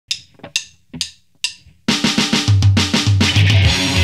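Four evenly spaced count-in clicks, about two a second, then a rock band comes in about two seconds in: a drum kit with bass and guitar playing a pop-punk song.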